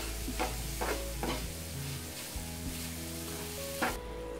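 Chopped jackfruit and sugar sizzling in a non-stick frying pan, stirred with a wooden spatula, with a few short scraping strokes. The sugar is slow-cooking and melting down into the jackfruit.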